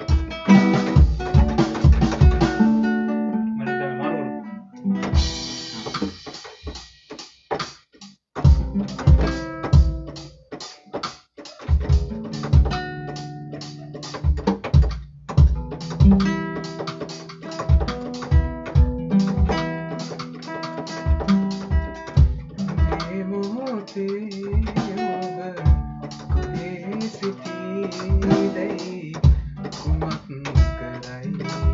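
Improvised jam: an acoustic guitar played along with a keyboard over a steady drum beat, with a few short breaks in the first part.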